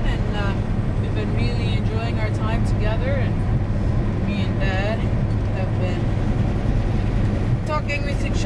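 Steady low drone of a semi-truck's engine and road noise inside the cab, with a voice talking on and off over it.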